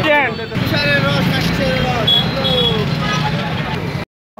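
A voice speaking over steady street traffic noise.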